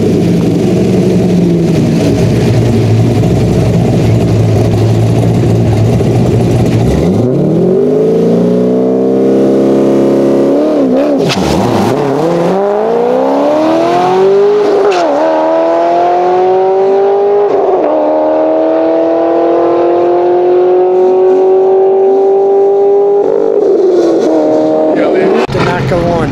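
2006 Corvette Z06's cammed LS7 V8 with long-tube headers running steadily at the start line, then launching about a quarter of the way in and pulling hard down the quarter mile. The pitch climbs through three upshifts, each a short dip before it rises again, then falls as the driver lifts off near the end.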